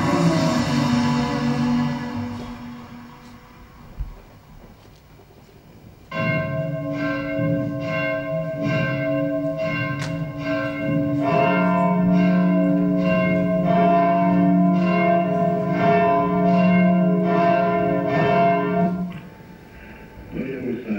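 Choral music fades out over the first couple of seconds; after a short lull, church bells start ringing, several bells struck in quick succession at about two strokes a second, with more bells joining about halfway through, then stopping shortly before the end.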